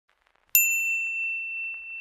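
A small bell struck once about half a second in: a single high, clear ding that rings on and slowly fades.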